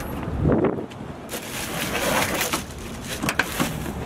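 A thump about half a second in, then crinkling and crunching of plastic bags of ice being handled in a pickup truck bed, with scattered sharp clicks.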